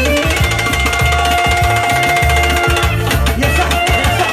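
Live kyuchek dance music: a Korg keyboard holding a long note over a steady bass beat, with hand drums played on a set of chrome drums.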